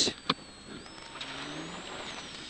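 Rally car engine and drivetrain heard faintly from inside the cabin. The engine note rises about a second in as the car accelerates, with a thin high whine climbing in pitch alongside it. A brief click comes just after the start.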